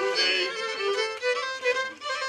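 Violins playing a Romanian folk dance tune, a melody of held notes stepping from one pitch to the next.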